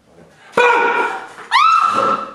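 A woman's voice letting out two loud, high-pitched cries without words: one breaks out about half a second in, and a second starts about a second and a half in, rising in pitch and then holding.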